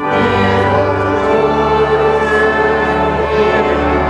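Voices singing a hymn with organ accompaniment, held chords under the melody; a new phrase begins right at the start after the previous chord dies away.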